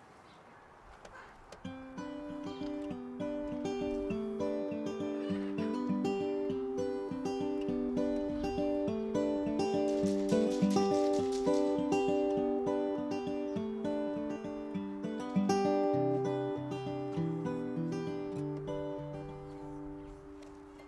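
Solo steel-string acoustic guitar picking a repeating arpeggiated pattern as a song's introduction, starting about two seconds in. Lower bass notes join in over the last few seconds.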